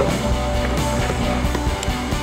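Indie pop-rock band music with guitar, playing steadily.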